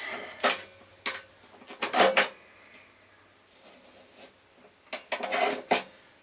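Hand-cranked apple peeler-corer clicking and clanking as an apple is pushed onto its forks and the mechanism is handled. A few separate knocks come in the first two seconds, and a quick clatter follows near the end.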